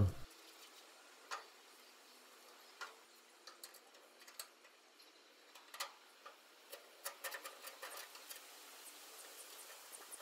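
Faint, scattered small clicks and ticks of a screwdriver working the screws that hold the igniter to a gas grill burner. They are sparse at first and come thickest about six to eight seconds in.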